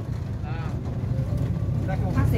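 Small motorboat's engine idling with a steady low rumble while the boat comes alongside a wooden pier, with faint voices on board.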